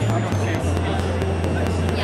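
Sonicware ELZ_1 synthesizer playing low bass notes dry, with its reverb mixed out: two short notes stepping down in pitch, then one long held low note from about half a second in.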